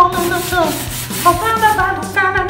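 A brush scrubbing the bark of a dead tree branch, the scrubbing heard mostly in the first second, over background music with a melody.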